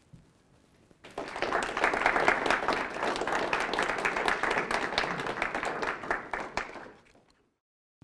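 A small audience applauding, starting about a second in and dying away near the end, then a sudden cut to dead silence.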